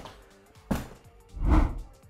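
Lange RX 130 LV plastic ski boot knocked heel-down twice on a wooden floor, a sharp tap and then a heavier thud, to seat the heel at the back of the boot.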